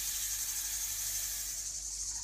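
Kitchen tap running steadily, its stream of water splashing into a ceramic soup plate as the plate fills.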